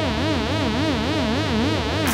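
Electronic dance music: a synthesizer tone with a fast pitch wobble, about five wobbles a second, over a steady low bass pulse.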